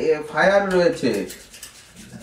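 A person speaking for about a second, then a short pause with faint room noise.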